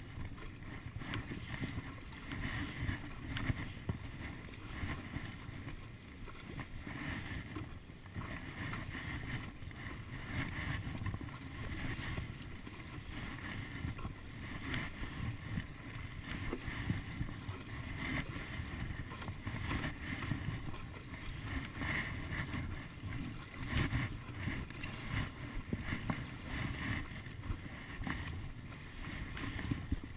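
Stand-up paddle strokes, the blade dipping and pulling through calm seawater every second or two, over a steady low rumble of wind on the microphone.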